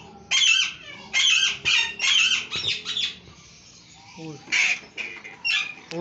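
Parakeets squawking: a quick run of short, high, harsh calls in the first three seconds, then a few more spaced out.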